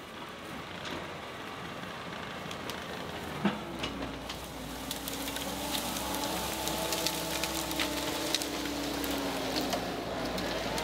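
John Deere 325G compact track loader approaching, its diesel engine running steadily and growing louder from about three and a half seconds in, with crackling and snapping of brush and branches under the machine.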